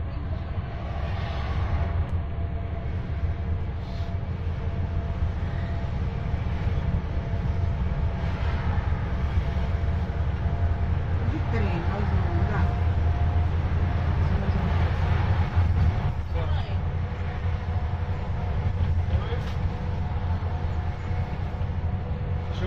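Steady low rumble of a bus driving along, heard from its upper deck, with a faint steady whine above it. Faint voices come through briefly in the middle.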